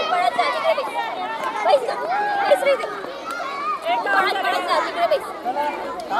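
Many young children's voices chattering and calling out over one another at the same time, a steady babble of high voices.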